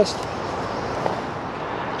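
Steady outdoor background noise, an even hiss with no distinct event apart from a faint tick about a second in.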